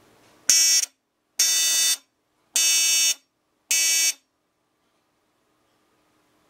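Piezo buzzer of a 555-timer shadow detector circuit sounding four shrill beeps of about half a second each, roughly a second apart, then falling silent.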